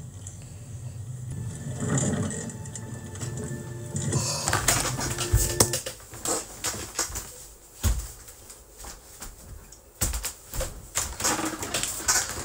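An animated TV episode's soundtrack playing back: a low music drone with panting, then from about four seconds in a run of sharp clicks and several heavy thumps.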